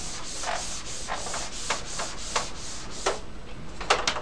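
Whiteboard eraser rubbing across a whiteboard in a series of quick, irregular strokes, wiping off marker writing.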